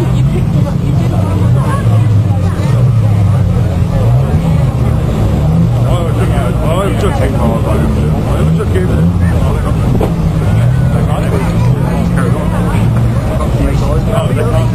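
A pack of banger racing cars' engines running and revving as they race round the track, their pitches rising and falling. People's voices run over them throughout.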